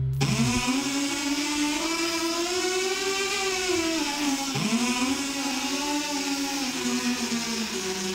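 Buzzy synthesizer tone with many overtones that starts sharply and slides slowly up in pitch, falls back with a dip about halfway through, then rises again and holds, over a steady hiss. The deep bass underneath cuts out in the first half second.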